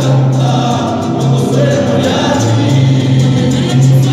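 Mariachi ensemble performing: violins and guitars with several voices singing together over a bass line that moves from note to note.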